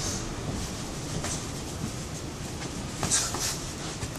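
Scattered brief slaps and scuffs of barefoot sparring, gloved strikes and feet moving on the mat, over a steady background noise. The sharpest pair comes about three seconds in.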